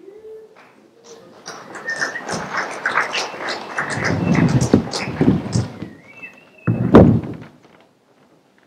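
Knocks, scuffs and footsteps of a set change on a darkened stage, building to a busy clatter, with a brief squeak and then one loud thump about seven seconds in.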